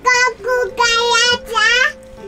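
A child singing in a high voice, in four or five short phrases.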